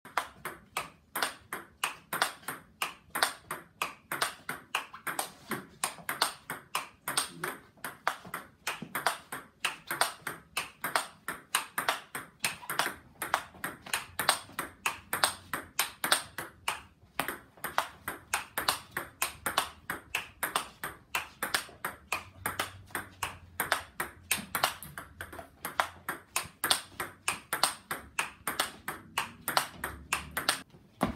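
Table tennis rally: a celluloid-type ball clicking off the rubbered rackets and bouncing on the table in a quick, even run of sharp knocks, several a second. One racket is a KA7 Plus seven-ply wooden blade being test-hit.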